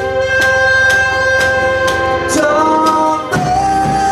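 Live band playing: electric and acoustic guitars with a drum kit keeping a steady beat of about two hits a second under long held notes.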